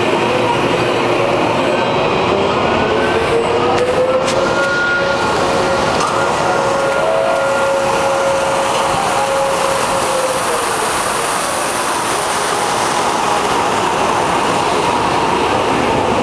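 Amusement ride's lift machinery running under a steady loud rushing noise as the gondola climbs. A faint whine rises in pitch a few seconds in, holds, then drops away about two-thirds of the way through, as the drive speeds up, runs and slows.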